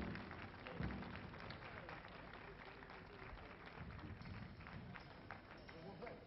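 Faint, scattered audience applause with many light claps, and low voices underneath.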